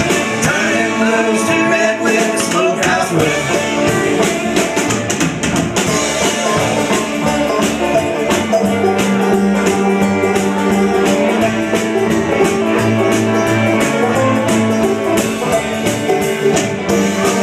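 Live bluegrass-style string band playing an instrumental passage: fiddle, banjo, electric guitar and upright bass together at a steady, loud level.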